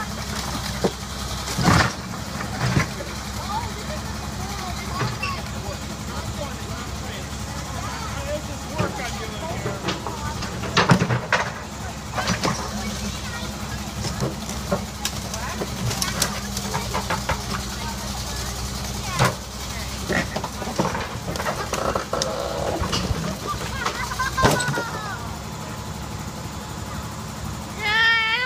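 Backhoe loader's diesel engine running steadily while its bucket bashes a burnt-out car body, with several loud crashes of crumpling metal at irregular intervals, the loudest about eleven seconds in.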